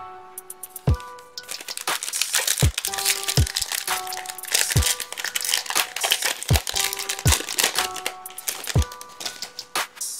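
Foil wrapper of a Topps baseball card pack crinkling loudly as it is torn open and peeled off the cards, from about two seconds in until near the end, over background music.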